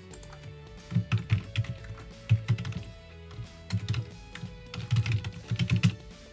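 Computer keyboard typing in several short bursts of keystrokes.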